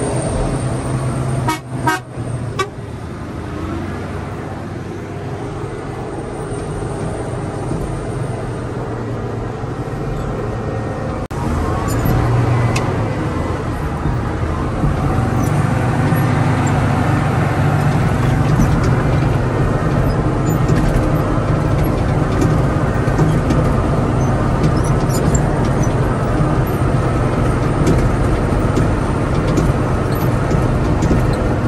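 Caterpillar motor grader's diesel engine running steadily, heard from inside the cab, with a few sharp clicks about two seconds in. It grows louder from about twelve seconds on as the machine works.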